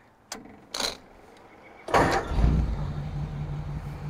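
1940 Ford Tudor's Ford 8BA flathead V8, with two Stromberg 97 carburettors and dual glasspack exhaust, started with a push button: after two light clicks it fires about two seconds in and settles straight into a steady idle.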